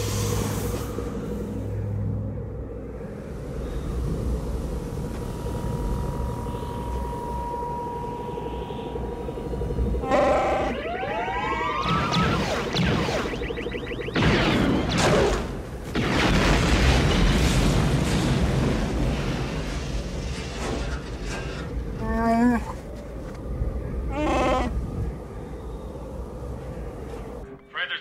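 Film sound effects of a snowfield fight: steady wind, a thin electronic tone and rising whistles from the Imperial probe droid, then a burst of blaster fire and a long, loud explosion as the droid self-destructs, with orchestral score underneath. Short growling cries follow near the end.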